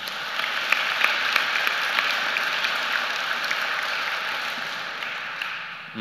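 Audience applauding in a gymnasium, starting all at once and slowly dying away.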